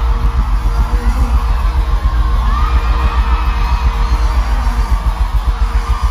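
Live band music played loud through a concert PA, driven by a heavy, fast-pulsing bass beat.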